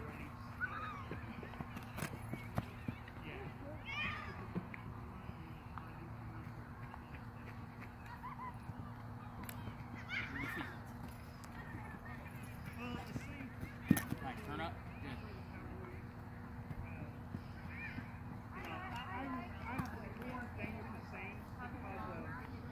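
Distant voices calling out now and then across an open field over a steady low hum, with a few sharp knocks, the loudest about 14 seconds in.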